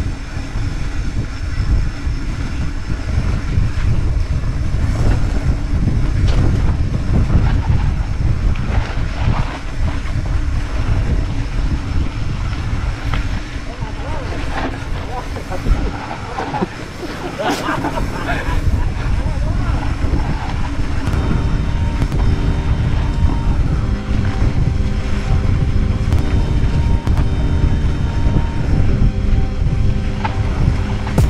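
Wind rushing over an action camera's microphone with the rattle and clatter of a mountain bike riding fast over a rough dirt single track. From about two-thirds of the way in, background music with sustained notes comes in under the riding noise.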